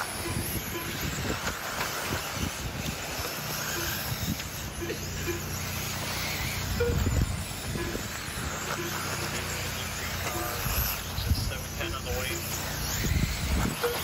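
Radio-controlled sprint cars running on a dirt oval, heard as a steady outdoor noise with wind on the microphone and faint voices in the background.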